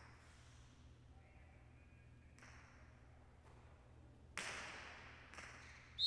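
A jai alai pelota strikes the fronton wall with a sharp crack that rings out in the hall, about four and a half seconds in, followed a second later by a lighter second hit. A few faint ticks come before it.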